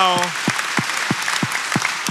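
Audience and panel applauding, with one nearby person's claps standing out sharply about three times a second.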